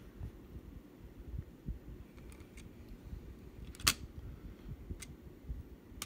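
Low handling rustle of a handheld camera being moved, with a few faint clicks and one sharp click about four seconds in.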